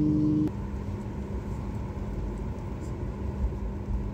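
Cabin noise of a Boeing 737 airliner taxiing: a loud steady drone with overtones cuts off suddenly about half a second in, leaving a quieter, even low rumble with a faint steady hum from the engines.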